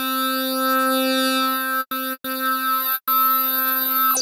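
Spectrasonics Omnisphere software synthesizer playing one bright, overtone-rich note four times at the same pitch, the first held nearly two seconds, through two filters running in parallel (a 24 dB low-pass and a 24 dB band-pass) with the filter gain boosted.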